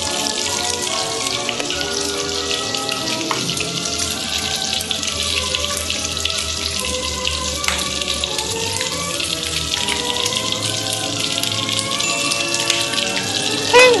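Bacon sizzling in a frying pan: a steady hiss with many fine crackles, over background music.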